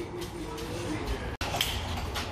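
Children's kick scooter wheels rolling over concrete, a low rumble, with faint child voices in the first second.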